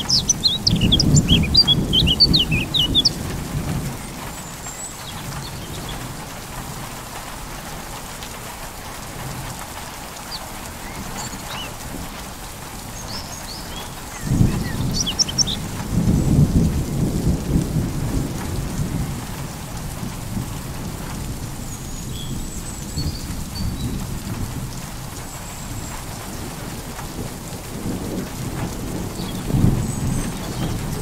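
Steady rain falling through a thunderstorm, with thunder rumbling three times: at the start, about halfway through, and again near the end. Short bird chirps sound over the rain in the first few seconds and again around the middle.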